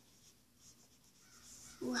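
Faint rubbing of a whiteboard eraser wiping marker off a whiteboard in short strokes.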